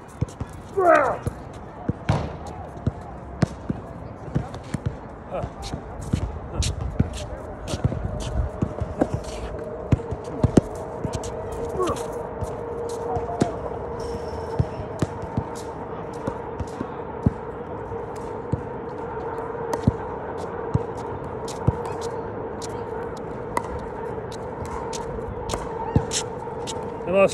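A basketball bouncing and footsteps on an outdoor hard court, as irregular sharp knocks throughout. A brief rising whistle-like sound comes about a second in, and a steady hum sets in about eight seconds in.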